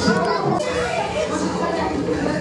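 Several children talking and exclaiming over one another, a lively mix of kids' voices.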